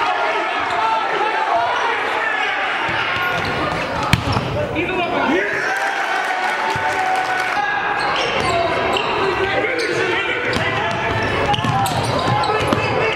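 Live basketball game sound in a gym: a ball dribbled on the hardwood floor under the shouts and calls of players and spectators, with one sharp impact about four seconds in.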